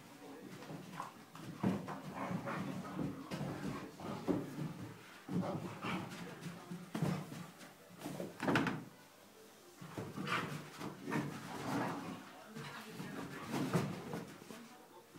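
Two Great Dane puppies play-fighting: irregular bursts of growling and grunting mixed with the thuds and scuffles of their paws and bodies on carpet.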